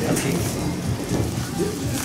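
Indistinct voices of people talking in the background, over a steady rustling, hiss-like noise.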